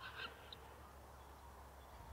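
Near silence: faint outdoor background with a steady low hum.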